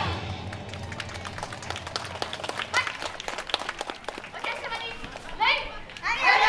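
Scattered audience clapping after the dance music stops, irregular single claps rather than a steady roar, with a few faint voices and a short call near the end.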